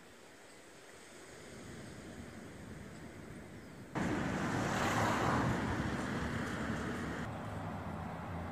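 Outdoor ambient noise: a steady rushing hiss and rumble with no clear single source, jumping abruptly louder about four seconds in.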